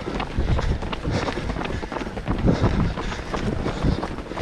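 Running footsteps on a tarmac path, heard from a runner carrying the camera: a steady rhythm of low thuds from the strides, several a second.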